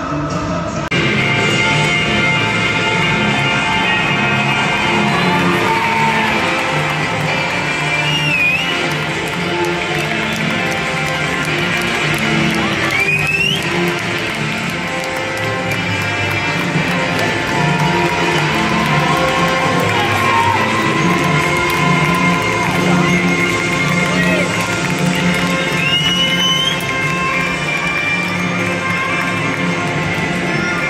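Loud music over a stadium public-address system, with a crowd cheering beneath it and a few short rising whistles.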